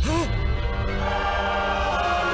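Dramatic anime score with a choir holding sustained chords over a low drone, growing fuller about a second in. A brief voiced cry sounds at the very start.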